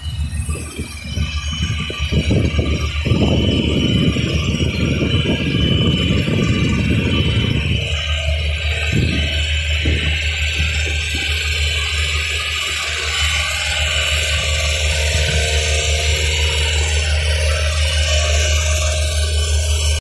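Music playing over the steady low hum of a Genie S-125 telescopic boom lift's engine as the boom swings, with a loud rush of noise during the first eight seconds or so.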